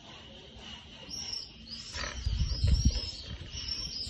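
A small bird chirping in short, high, repeated notes, with a low rumble rising about halfway through.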